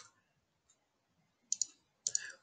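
Computer mouse clicks: one sharp click at the start, then a quick double click near the end.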